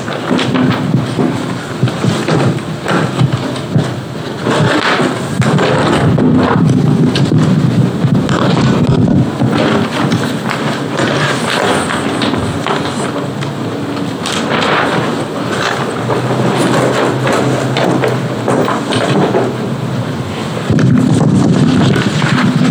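Loud close rustling and rubbing with scattered thumps: large paper plan sheets being handled and flipped over on an easel, with handling noise on a nearby microphone.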